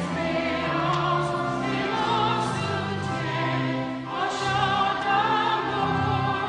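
A choir singing in long held notes with vibrato.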